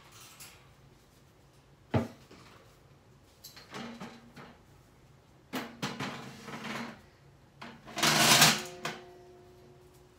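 Metal step ladder being moved and set up: a sharp knock, bursts of clattering, and a loud scraping clatter about eight seconds in that leaves a metallic ring hanging for a second or so.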